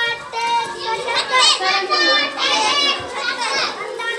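Many children's voices at once, talking and calling out over one another.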